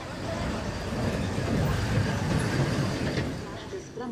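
A motor vehicle passing on the street, its engine and road noise growing louder to a peak about two seconds in, then fading.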